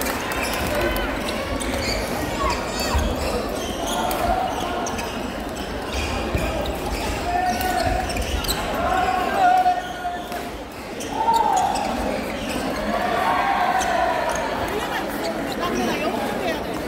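Badminton being played in a large hall: sharp racket hits on shuttlecocks and short squeaks of court shoes on the floor, with voices in the background.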